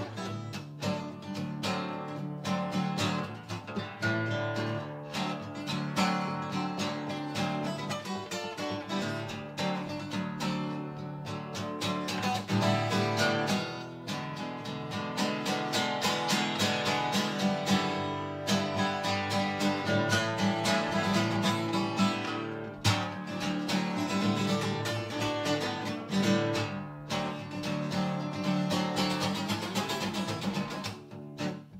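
Solo acoustic guitar strummed in a steady, continuous chord rhythm, with no singing.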